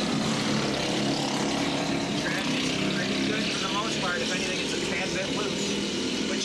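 Several go-kart engines running together at racing speed, a steady drone of overlapping engine tones.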